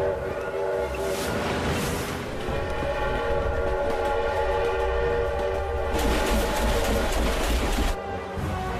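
Train horn sounding in one long held chord over the low rumble of a moving train, with a harsher rushing clatter joining about six seconds in.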